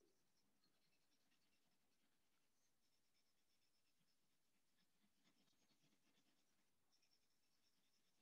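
Near silence, with faint scratchy colouring strokes on paper coming and going.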